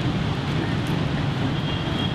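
Steady rumble of city traffic with no voice over it. A thin, high steady tone sounds for about a second near the end.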